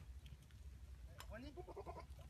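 A goat bleating faintly once, a short wavering call a little over a second in, over a low steady rumble.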